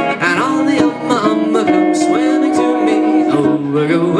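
A ukulele and a pedal steel guitar playing a Hawaiian song together, the steel holding long sustained notes over the ukulele's plucked chords.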